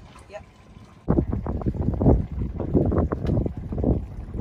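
Wind buffeting the microphone: a loud, low rushing noise that sets in suddenly about a second in and keeps rising and falling in gusts.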